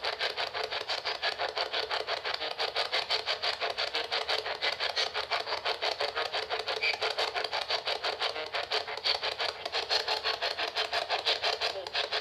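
PSB-11 spirit box sweeping through radio stations: tinny radio static chopped into rapid, even pulses, several a second, from its small speaker.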